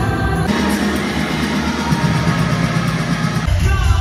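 Live music with singing from an arena stage show, heard through a phone's microphone. The music changes abruptly about half a second in and again near the end, where a song with a heavy bass beat takes over.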